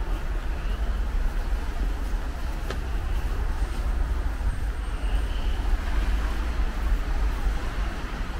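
City street traffic noise: cars going by over a steady low rumble, with a single sharp click a little under three seconds in.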